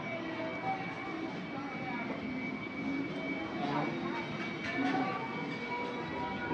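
Busy casino floor ambience: a crowd talking amid the electronic chimes and tones of slot machines, with a thin steady high tone.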